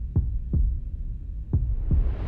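Heartbeat sound effect: two low double thumps, lub-dub, over a low rumble. A rising hiss swells in near the end.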